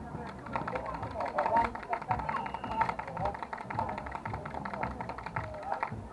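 Several people's voices talking and calling out, mixed with music playing in the background.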